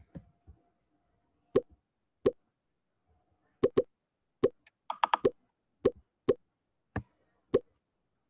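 Quizizz lobby pop sound effects, one short pop each time a player joins the game. There are about ten pops at irregular intervals, several bunched together about five seconds in.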